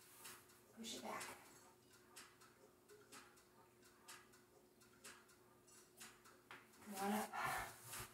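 Short wordless vocal sounds from a woman: a weaker one about a second in and a louder one near the end, over a faint steady hum.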